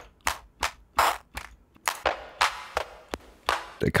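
Electronic clap samples previewed one after another, about three a second. Some are dry and some carry a longer reverb tail.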